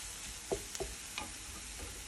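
Diced onion and bell peppers sizzling in a nonstick frying pan as a wooden spatula stirs them, with a few sharp clicks of the spatula against the pan.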